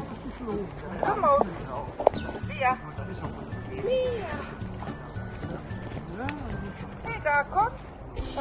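Voices talking over background music, with scattered rising and falling calls.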